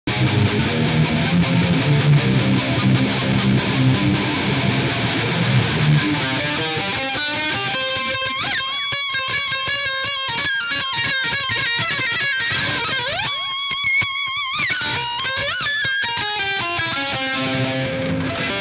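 Eight-string electric violin improvising in a rock style. Low, dense chords for about the first six seconds, then a high lead line with fast notes, slides and wide vibrato.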